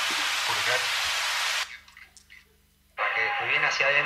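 A loud burst of hissing noise lasting about a second and a half, cutting off suddenly; after a short gap a voice starts near the end.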